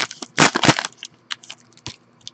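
Foil trading-card pack being torn open and crinkling in the hands, loudest in the first half, then a few lighter crackles of the wrapper.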